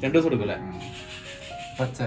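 A man's voice briefly, then a rough rubbing, scraping hiss of green bamboo stalks being handled.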